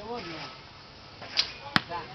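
A bow being shot: a short snap of the released string about a second and a half in, then a second, sharper crack a third of a second later.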